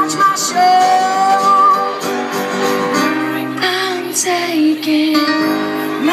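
Live band music: a woman singing with keyboard accompaniment, holding a long sustained note about a second in before the melody moves on.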